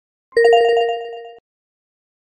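Electronic outro chime: a single bright, ringing note with a fast warble, coming in about a third of a second in and fading away over about a second.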